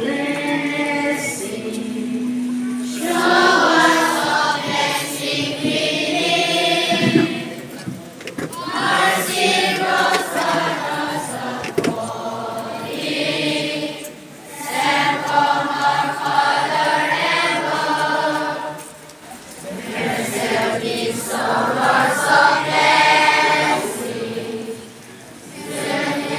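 A large group of schoolchildren singing together like a choir, in phrases a few seconds long with brief pauses between them.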